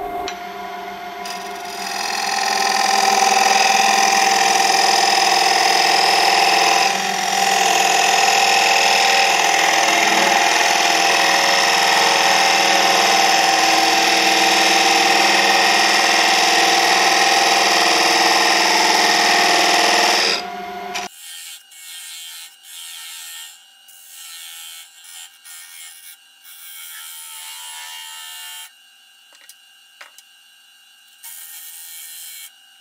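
A parting tool cutting into a wooden bowl blank spinning on a wood lathe: a loud, steady scraping cut over the lathe's steady whine, shaping a wedge-shaped recess for the chuck jaws. About two-thirds of the way through the sound drops off abruptly to quieter, intermittent light scraping.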